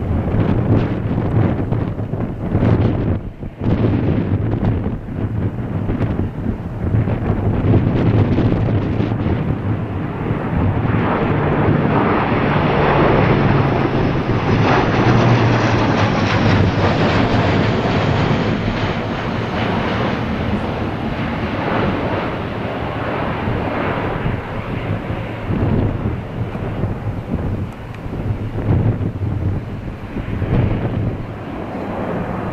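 Airbus A400M's four Europrop TP400 turboprop engines and propellers in a low display pass overhead: a steady low drone under a rushing noise that builds to its loudest about halfway through, then slowly fades.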